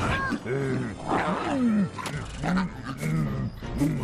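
Cartoon fight sound effects: a monster's growls and roars mixed with a man's strained grunts, with several sharp impacts.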